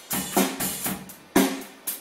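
A rock band playing in the studio: sharp drum-kit hits, with pitched notes ringing out between them.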